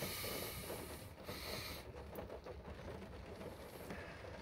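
Faint steady background hiss with a few soft, brief swells of higher hiss: a quiet pause with no speech.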